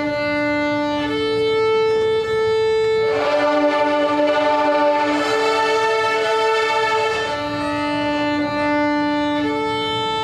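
A group of young violin students bowing together, holding long notes of about two seconds each and alternating between a lower and a higher note: a slow-bow warm-up.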